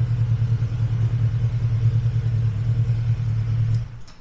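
Yamaha VMax 1700's V4 engine idling steadily in neutral, a low pulsing note, until it is switched off near the end and the sound drops away abruptly.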